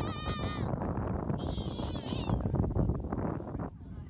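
Wind buffeting the microphone, with a child's high, wavering squeal in the first half-second and a shorter high cry about halfway through, as children slide down a sand dune on sandboards.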